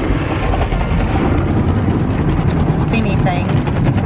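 Automatic car wash washing the car, heard from inside the cabin: a loud, steady rush of water and soap spray over the body and windows, with a low rumble underneath.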